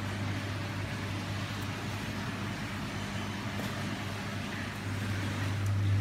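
Aquarium pumps and filtration equipment running: a steady low electrical hum under an even hiss of moving water and air.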